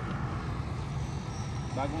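Steady low rumble of wind and road noise from moving along a road, with a voice starting near the end.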